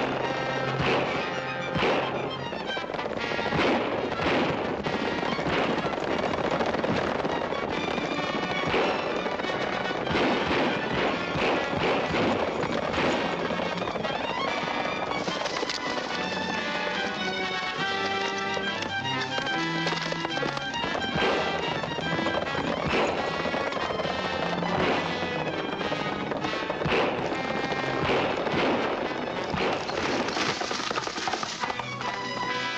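Dramatic film score music with repeated gunshots fired over it during a running gunfight on horseback.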